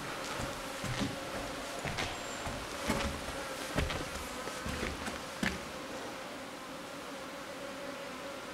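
A flying insect buzzing steadily, with a few scattered short knocks of steps or debris underfoot during the first five or six seconds.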